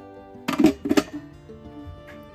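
Glass canning jars clinking against each other a few times about half a second in, as they are stacked in a water bath canner, over background music with sustained notes.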